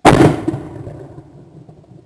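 A single shotgun shot at a skeet clay, very loud right at the gun, breaking the clay. The report rings out and fades away over about two seconds.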